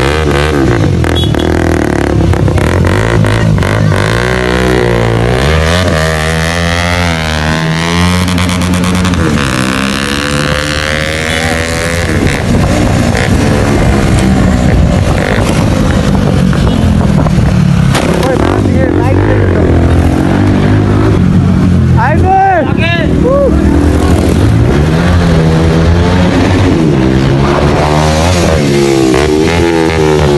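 Several motorcycle engines running and revving, their pitch rising and falling repeatedly, with the voices of a crowd.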